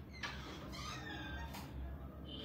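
Cat meowing: two short meows in the first second.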